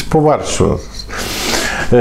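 Cotton shirt fabric rustling and rubbing for about a second from halfway through, as the wearer turns his body.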